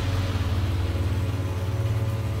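A low, steady rumbling drone with no sharp hits.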